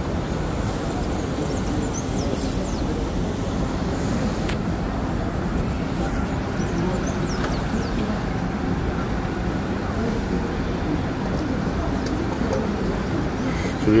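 Steady ambience of a busy city square: a continuous hum of bus and car traffic mixed with a murmur of distant crowd voices.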